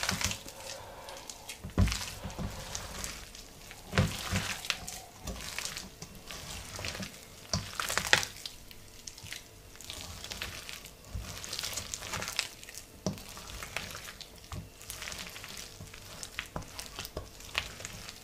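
A hand squeezing and mixing wet onion bhaji batter of sliced onion and gram flour in a stainless steel bowl, making an irregular wet squelching crackle with a few louder thumps.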